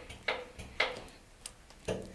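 Hand trigger spray bottle squirting water onto window tint film: short hissing sprays about every half second, then a pause before one more spray near the end.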